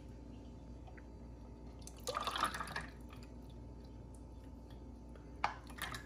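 Thick chocolate mixture trickling through a plastic funnel into a plastic popsicle mould, a brief wet pour about two seconds in, then a single light tap near the end.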